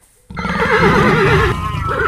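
A horse whinnying: one loud call starting about a third of a second in, its pitch quavering rapidly through the middle.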